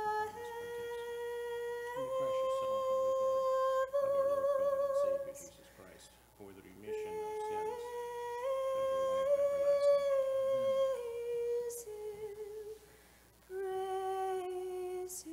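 A single high voice chanting a slow, melismatic Orthodox Byzantine-style hymn, holding long notes that step up and down, with pauses for breath about six seconds in and again near the end.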